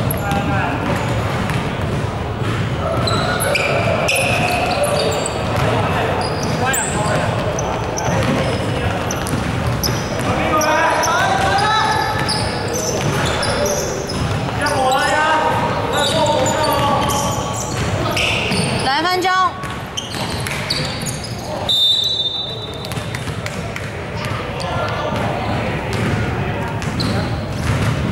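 Indoor basketball game: a ball bouncing on the hardwood court amid players' shouts and chatter, echoing in a large sports hall. A brief high tone sounds about three quarters of the way through.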